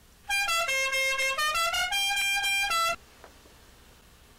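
A short melodic jingle of about a dozen buzzy, horn-like held notes stepping up and down in pitch. It runs about two and a half seconds and stops abruptly.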